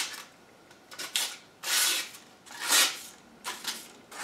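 A sheet of paper being sliced by the edge of a Condor El Salvador machete, the blade drawn from the tip along the edge in a paper cut test of its sharpness: about four short, crisp slicing rasps, each under a second apart.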